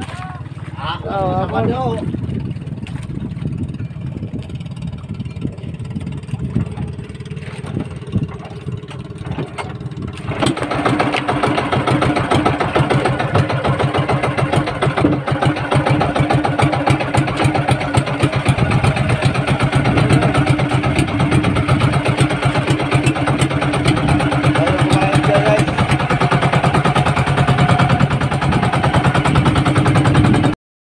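Outrigger fishing boat's engine running at low speed, then opened up abruptly about ten seconds in and running louder and faster, steady from then on.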